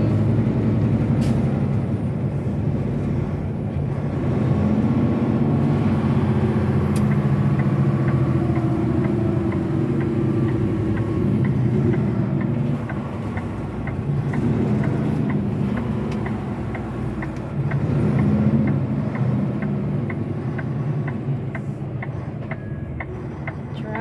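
Road and engine noise heard from inside a moving car: a steady low rumble. Through the second half a light, regular ticking joins it, about two ticks a second.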